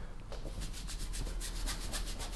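Paintbrush scrubbing acrylic paint onto a canvas in quick back-and-forth strokes, about nine or ten a second, while a grey background layer is worked in.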